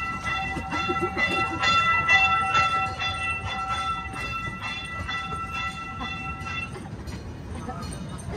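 A train bell ringing steadily at about two strikes a second, each strike ringing on, and stopping about seven seconds in, over the low rumble of the small ride train running along its track.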